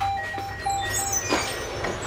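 A simple electronic jingle of short beeping notes starting suddenly, with a single knock about a second and a half in, over a steady low hum.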